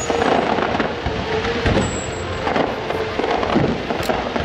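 Aerial fireworks bursting overhead: several booms about every half-second to second, over a dense crackle from the red stars.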